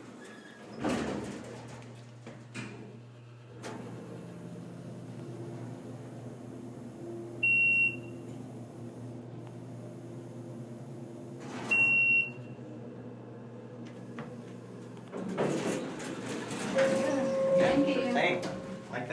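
Otis hydraulic elevator's pump motor running with a steady hum as the car travels up, starting a few seconds in and stopping near the end. Two short, loud, high electronic beeps sound about four seconds apart while it runs.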